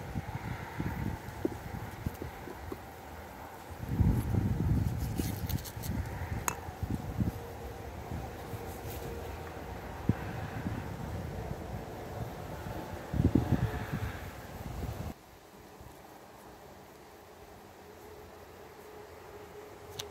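Wind buffeting the microphone outdoors, with two stronger low rumbling gusts about four and thirteen seconds in and a single sharp click a little after six seconds. After about fifteen seconds it drops to a quieter background with a faint steady hum.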